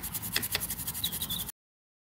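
Toothbrush bristles scrubbing a circuit board around a PLCC socket's soldered pins with isopropyl alcohol, cleaning off flux residue. It is a quick rapid brushing, and it cuts off abruptly about a second and a half in.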